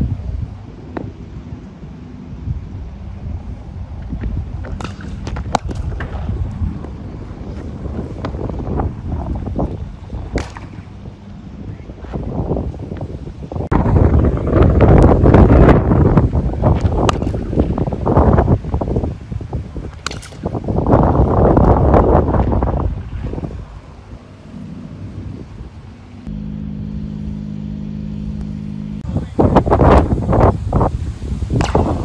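Wind buffeting the microphone, swelling loudly twice midway, with a few sharp knocks of a cricket bat hitting the ball. A steady low hum comes in near the end.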